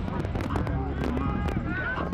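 Indistinct voices of players and coaches talking and calling out on a football practice field, not close to the microphone, over a steady low rumble, with a few sharp clicks.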